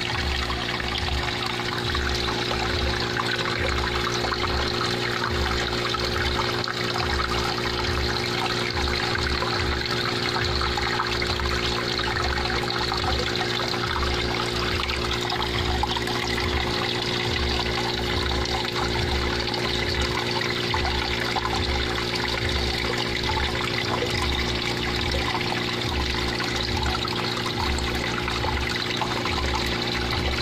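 Water running and trickling steadily into a goldfish pond, with a steady low hum underneath.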